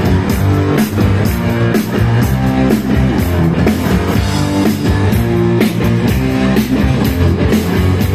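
Live band playing a loud rock number, with drum kit and guitar over a steady bass line.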